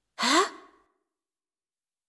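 A boy's short, breathy startled gasp, voiced and rising in pitch.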